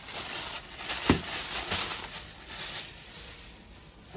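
White plastic wrapping rustling and crinkling as it is handled and pulled open by hand, with one sharp click about a second in. The rustling dies down over the last second or so.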